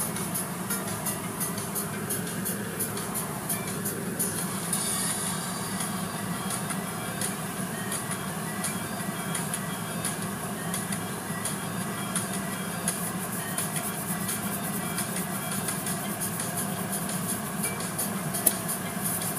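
Steady rush and drone of a tunnel car wash heard from inside the car: spray water and the wash machinery running without a break, muffled by the cabin.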